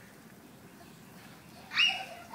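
A child's short, high-pitched squeal near the end, after a stretch of faint background noise.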